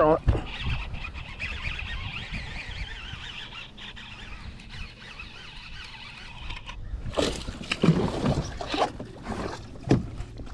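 Baitcasting reel being cranked to reel in a hooked bass, a steady whirring from the reel's gears. About seven seconds in, a few louder bursts of noise break in toward the end.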